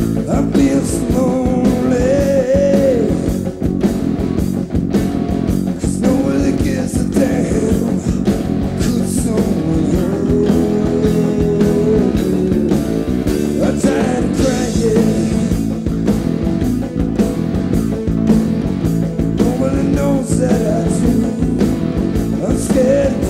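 Rock band playing live, with a male lead vocal over electric guitar, keyboards and drums at a steady, loud level.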